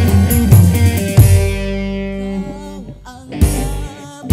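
Live dangdut band playing, with drums and electric guitar. A little over a second in, the band stops on one held chord that fades away; a short hit follows near the end, and the band starts up again.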